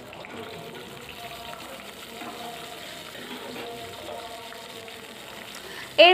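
Green chillies frying in a shallow layer of hot oil in a kadai: a soft, steady sizzle.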